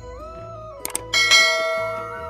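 Subscribe-button animation sound effects over steady background music: a quick double click just under a second in, then a bright bell chime that rings out and fades.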